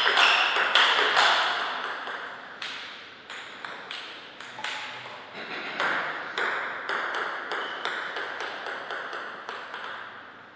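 Table tennis ball clicking off rubber-faced paddles and bouncing on the table during a rally, then a string of lighter, quicker ball bounces between points.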